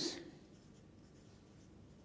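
Felt-tip marker writing on a sheet of paper, faint.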